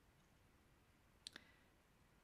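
Near silence with faint room hiss, broken once by a single short click about a second in.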